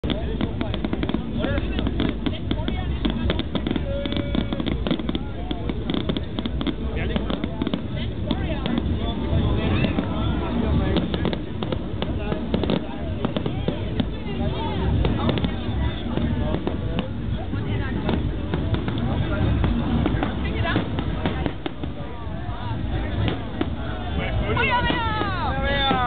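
Aerial fireworks going off: a dense, continuous run of shell bursts, bangs and crackling, with people's voices underneath.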